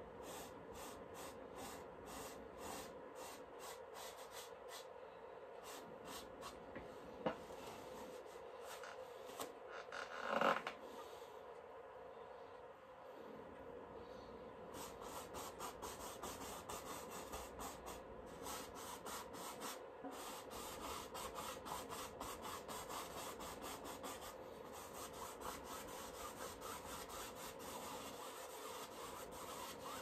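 A small bristle paintbrush rubbing and scratching across a canvas in short, repeated strokes, over a low steady hum. A brief louder noise comes about ten seconds in.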